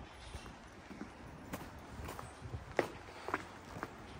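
Footsteps of a person walking across a wooden deck and onto concrete: light, separate steps about two a second, starting about a second and a half in.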